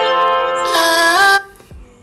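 A snippet of a song playing back from a phone video-editing timeline: a few held notes that step up in pitch, then cut off suddenly about one and a half seconds in as playback stops.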